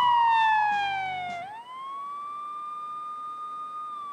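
Siren sound effect in a TV crime segment's title sting: a single wailing tone slides down in pitch for about a second and a half, then rises back up and holds steady. Music under it fades out in the first second and a half.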